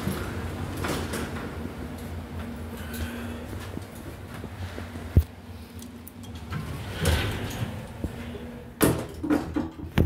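Dover hydraulic elevator's sliding doors working: they run open and then close again, with a sharp knock about five seconds in and a clatter ending in a solid thud as the doors shut near the end. A low steady hum runs underneath in the first half.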